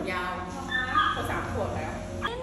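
Small long-haired Chihuahua whining and yipping in two high-pitched stretches in the first second and a half.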